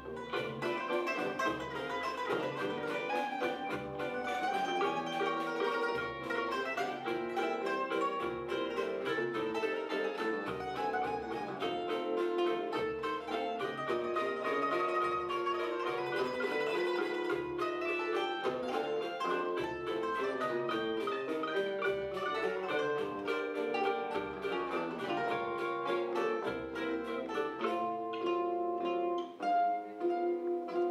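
Live instrumental choro: a bandolim carries the melody over seven-string guitar, cavaquinho, pandeiro and a surdo's steady low beat. The surdo's beat drops out near the end as the piece moves into its closing phrases.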